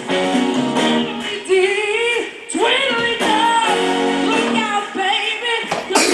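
A woman singing an upbeat song into a microphone over a live band with guitar, holding and bending long notes.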